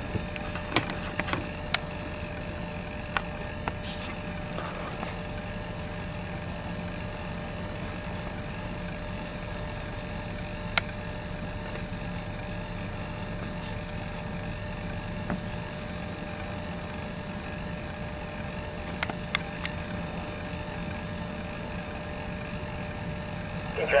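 Insects chirping outdoors in short, high, repeated pulses, a few per second, over a steady low hum, with a few faint clicks.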